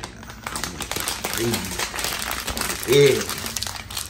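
A Rap Snacks chip bag crinkling as it is handled and squeezed. A short vocal sound comes about one and a half seconds in, and a louder one about three seconds in.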